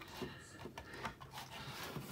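Faint handling sounds of a lipo battery's leads and plug at a battery discharger: a few small clicks and rubs.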